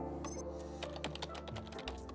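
A run of computer-keyboard typing clicks over sustained closing music. The music begins to fade toward the end.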